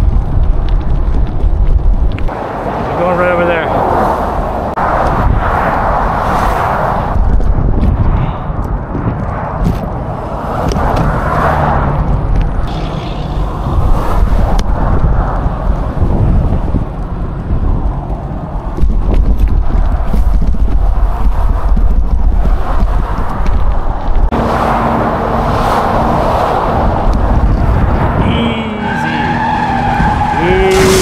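Wind rushing over a bicycle-mounted action camera's microphone while riding along a highway shoulder, a loud, gusting rumble with motor traffic passing in the lanes alongside.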